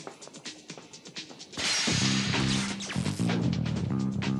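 Action-cartoon soundtrack music with a quick ticking beat. About a second and a half in, a loud crash-like noise hits, and heavier music with low held notes carries on under it.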